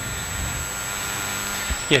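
Steady room noise in a hall, an even hiss with a faint thin high-pitched whine, with a soft low bump shortly before a voice says 'yeah' at the end.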